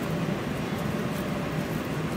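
Steady, very loud drone of an airliner cabin in cruise, the engine and airflow noise of the plane with a low hum and a faint steady tone above it.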